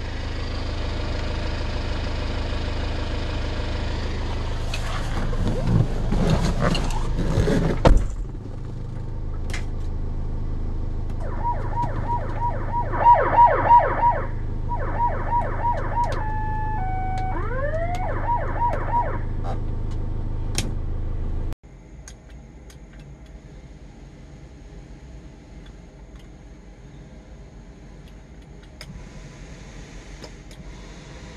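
The Hyundai Grand Starex ambulance's electronic siren is tested from its overhead control panel: short bursts of repeating siren tones, a few stepped tones and a rising wail, each switched on and off. Underneath is the steady running of the van's engine. A clatter of knocks comes about six to eight seconds in, and about two-thirds of the way through the sound cuts away to a quieter low hum.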